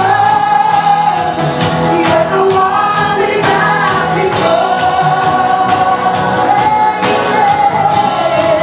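Live praise-and-worship song: a woman leads the singing with long held notes over strummed acoustic guitar and band, with a group of voices singing along.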